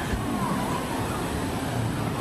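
Busy outdoor theme-park background: faint distant voices over a steady rush of noise.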